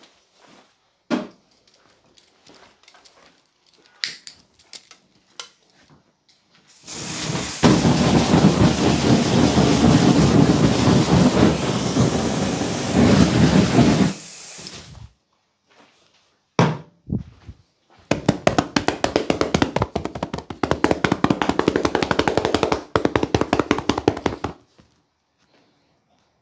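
Hands working vigorously in a barber's massage: about eight seconds of hard, noisy rubbing, then a few knocks, then about six seconds of rapid slapping strokes.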